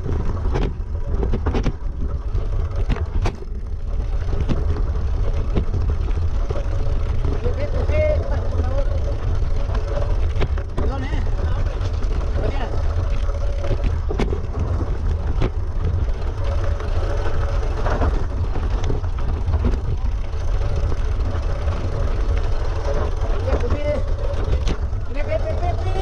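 Mountain bike descending a rocky, loose-stone trail, heard through a camera mounted on the bike: a constant low rumble of wind and vibration, with sharp knocks and rattles from the tyres and frame over the stones, most frequent in the first few seconds.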